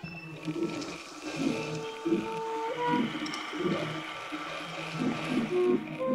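Improvised electronic soundscape: a continuous water-like rushing noise layered under a few held instrumental notes and short scattered low blips.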